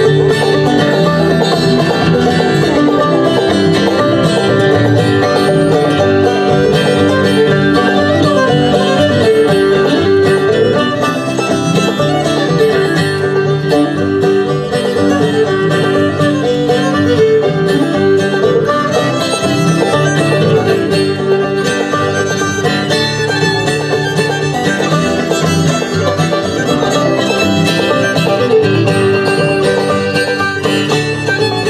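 Bluegrass band playing an instrumental passage on banjo, fiddle, acoustic guitar and upright bass, the banjo and fiddle to the fore, at a steady level.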